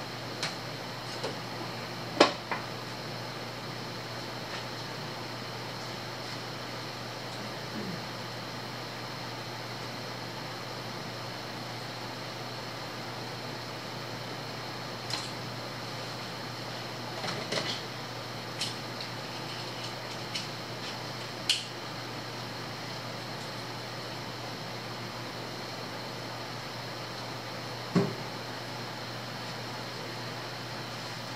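Scattered sharp clinks and knocks of tools and parts being handled in an engine bay, a few seconds apart and loudest about two seconds in, over a steady low hum.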